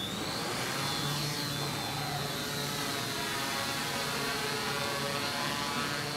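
Multirotor delivery drone's six rotors whirring as it lifts off with a parcel slung beneath; the motor whine rises in pitch in the first moment, then holds steady.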